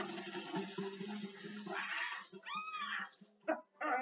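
Cartoon whale sound effects as the whale spouts from its freshly unblocked blowhole: a low, steady, voice-like call with a hiss of spray over it. About two and a half seconds in comes a short high squeal that rises and falls.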